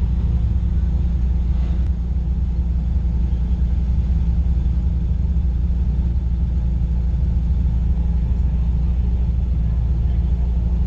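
Nissan 240SX drift car's engine idling steadily, heard from inside its stripped, roll-caged cabin: a low, even drone with no revving.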